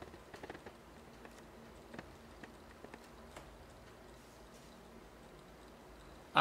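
Very faint, irregular light ticking over a low steady hum from a small low-temperature Stirling engine running smoothly on a cup of hot water.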